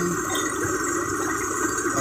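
Motorised rice thresher running steadily as sheaves of rice are fed into its drum: an even, continuous mechanical hum.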